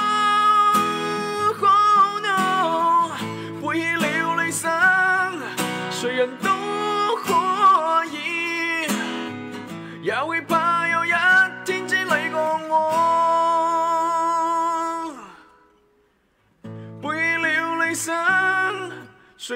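Acoustic guitar strummed while a man sings along. The music drops out briefly near the end, then starts again.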